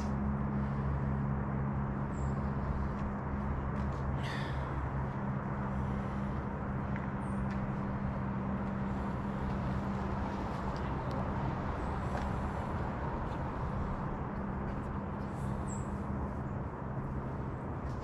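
Outdoor ambience: a steady low hum with a few distinct pitches that fades near the end, and a few faint bird calls over it.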